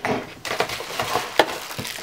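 Handling noise: light knocks and rustling as hands move over a plastic alarm clock and pick up its power cord.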